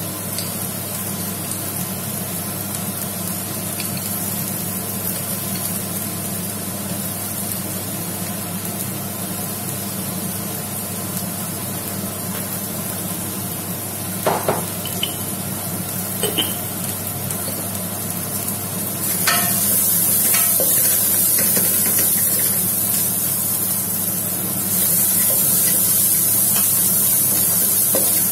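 Chopped onions, green chillies and curry leaves sizzling in oil in an aluminium pot, a steady hiss with a couple of brief clicks midway. The sizzle grows louder about two-thirds of the way through and again near the end.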